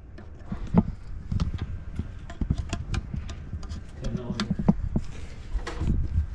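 Irregular light clicks and knocks of handling and movement over a low rumble, with a brief murmured voice about four seconds in.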